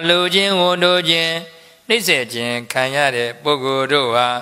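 Speech only: a Buddhist monk preaching in Burmese in an even, drawn-out delivery, two phrases with a short break about halfway.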